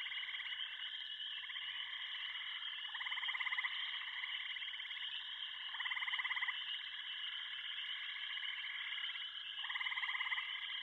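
Background music: a steady electronic drone with a fast pulsing trill that swells for under a second about every three seconds.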